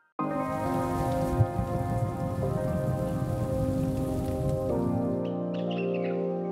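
News-channel weather ident. It starts abruptly with a rain-like hiss over sustained musical chords that change twice; the hiss stops near the end, leaving the chords and a few short chiming plinks.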